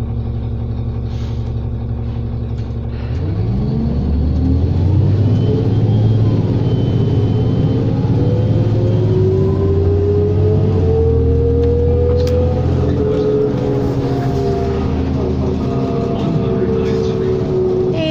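2003 New Flyer D40LF diesel bus engine idling from inside the cabin, then pulling away about three seconds in: the engine note climbs and holds as the bus gets up to speed.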